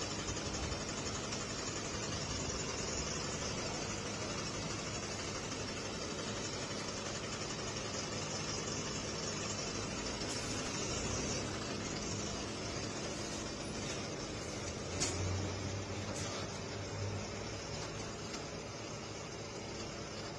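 A steady engine hum of an idling truck, with a broad rushing noise over it, and a single short thump with a brief rumble about fifteen seconds in.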